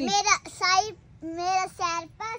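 A small child's high voice in a few drawn-out, sing-song phrases.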